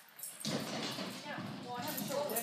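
A dog running over an agility A-frame: a dense clatter of its feet on the ramp starts suddenly about half a second in and keeps on, with people talking faintly over it.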